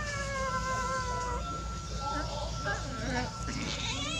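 A cat's long, drawn-out meow that falls slowly in pitch and fades out about a second and a half in. Another meow starts rising right at the end.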